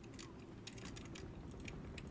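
Faint computer keyboard keys clicking in quick, irregular taps, as in play on a computer game.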